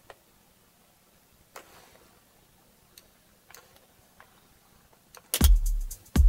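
A few faint computer-mouse clicks, then about five seconds in an electronic drum loop starts playing back, led by a deep kick drum and bass.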